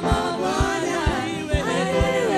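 Live gospel praise-and-worship singing: choir voices with a woman lead singer over a band, with a steady kick drum beat about twice a second.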